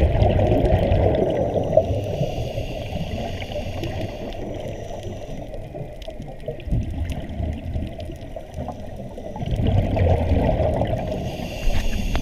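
Scuba regulator exhaust bubbles gurgling underwater, muffled through the camera housing. There are two louder exhalation bursts, one at the start lasting about two seconds and one about ten seconds in, with quieter bubbling between them.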